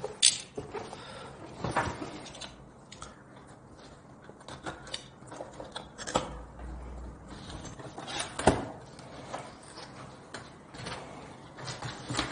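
Scissors cutting the packing tape on a cardboard box, with scattered sharp taps, knocks and rustles of the cardboard as the box is handled. Near the end the box's flaps are opened.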